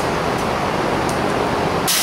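Steady rushing background noise, with a short sharp hiss near the end.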